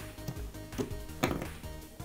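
Three light clicks and knocks as a soldered Arduino shield is pulled off the Arduino board's header pins, under faint background music.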